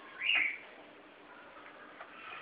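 African grey parrot giving one short whistle that rises and then falls in pitch, near the start.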